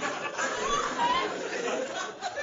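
Live audience laughing and chattering, many voices at once, in a large room.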